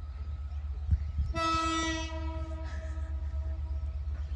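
Diesel locomotive horn sounding once, a single steady blast of about a second and a half that then fades, from the out-of-sight lead locomotive of an approaching freight train at a level crossing, over a steady low rumble; a brief thump comes just before it.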